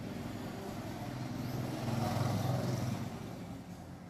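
Low engine hum of a passing road vehicle, growing louder about two seconds in and then fading.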